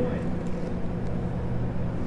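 Steady open-air background noise with a low, even hum underneath, in a pause between spoken phrases.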